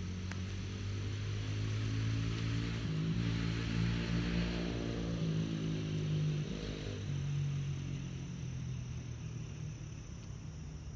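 A distant engine passing by: its hum grows louder toward the middle and then fades. Crickets chirp steadily and high underneath.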